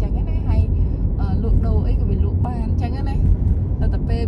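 Steady low rumble of a moving car's engine and tyres on the road, with a person talking over it in short stretches.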